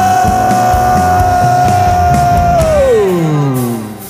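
A live worship band with drums plays. One long held note stays level, then slides steeply down in pitch about three seconds in, and the music drops away at the end.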